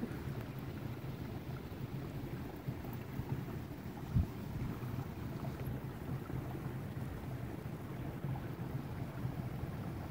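Steady low rumble of wind on the microphone outdoors, with a single low thump about four seconds in.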